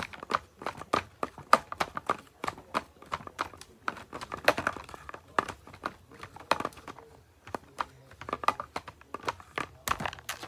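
Plastic bottle and toy 'ingredients' being stirred around in a plastic tub: a busy run of irregular crinkles, clicks and knocks.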